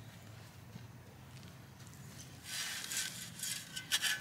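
A shovel blade scraping through sandy soil as dirt is piled up; it starts about two and a half seconds in, after a faint, quiet stretch.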